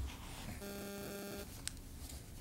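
A low, steady electronic buzz lasting almost a second, starting about half a second in, over the quiet of a room, with a short click near the end.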